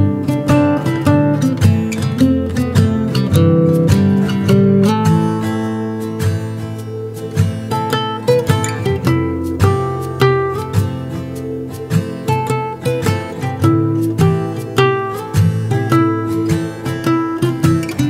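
Background music: an acoustic guitar playing plucked notes and strummed chords in a steady rhythm.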